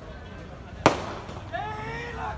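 A single sharp firecracker bang a little under a second in, over the steady hubbub of a crowd; raised voices come up near the end.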